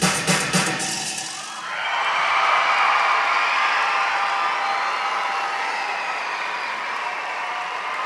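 Music with a steady drum beat fades out in the first second or so, then a large arena crowd applauds and cheers steadily.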